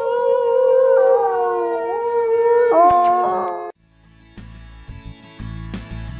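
A long, loud howl that holds one pitch with a few step-like shifts, then breaks off abruptly a little under four seconds in. After a brief near-silence, soft plucked-guitar outro music begins.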